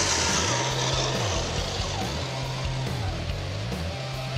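Background rock music with a repeating bass riff, over a bright rushing noise that starts suddenly just before and slowly fades.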